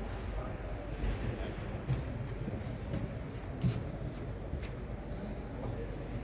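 Background noise of a large indoor hall with faint, indistinct voices, broken by a few short sharp clicks or knocks, the loudest a little past the middle.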